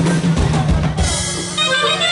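Norteño band playing live through a PA: drum kit keeping the beat under bass, with accordion notes coming in about a second in.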